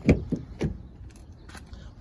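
A 2020 Honda Pilot's front door being unlatched and swung open: a sharp clunk just after the start, two lighter knocks within the next half second, then a couple of faint clicks.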